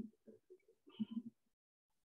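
Faint, muffled snatches of a person's voice coming through a video call, a few short syllables in the first second or so, then silence as the call audio cuts out.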